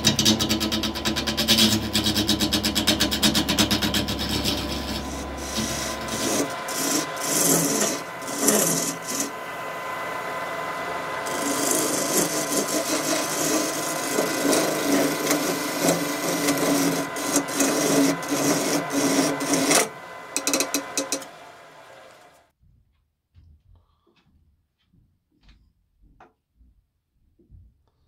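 A wood lathe at its low speed of 930 RPM with a gouge roughing down a segmented maple blank, knocking off the corners of the glued-up rings: a rapid, irregular chattering cut over a steady motor whine. The noise stops about twenty seconds in, leaving near silence.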